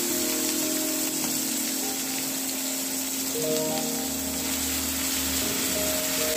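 Instrumental background music with held, changing notes, over a steady hiss of small onions, tomato and green chilli sizzling in oil in a steel kadai.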